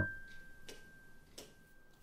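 Background music between phrases: one high held note from a keyboard chord fading out, with light evenly spaced ticks about every 0.7 seconds.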